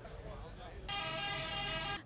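A truck's air horn sounding one steady, many-toned blast that starts suddenly about a second in, over a low rumble.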